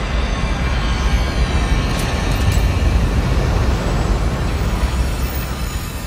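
Large ocean waves breaking: a dense, steady rush of whitewater with a heavy low rumble, with music underneath.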